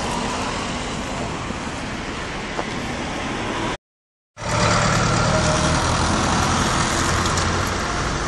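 Street traffic noise from passing cars. It breaks off for a moment about four seconds in and returns louder, with the low steady hum of a vehicle engine running close by.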